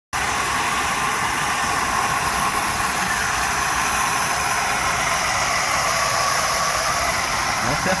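Gas burner of a flame treatment machine running with its flame lit, giving a steady hiss.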